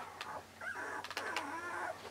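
A puppy whimpering faintly, a brief high squeak about half a second in, with a few soft clicks and rustles.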